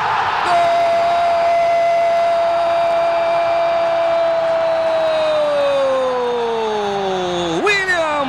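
Football commentator's drawn-out goal cry, a long "Goool!" held on one high pitch for about four seconds, then sliding down in pitch until it breaks off near the end.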